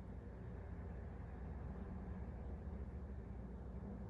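Faint, steady low background rumble with light hiss: room tone, with no distinct handling sounds.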